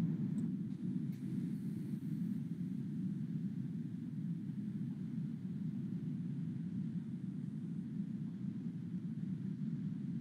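Steady low background hum from an open microphone on a video call, with no distinct events.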